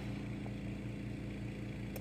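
A steady low hum with a faint even hiss and no other events: room tone.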